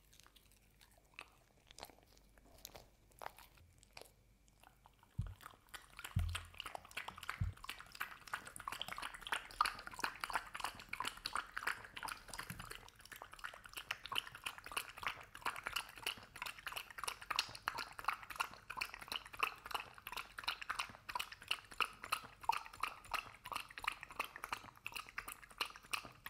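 A dog lapping and slurping a thick kibble-and-oatmeal mush from a glass mug: a dense run of quick wet clicks that starts about five seconds in and keeps going. It is preceded by a few scattered small clicks and three dull knocks.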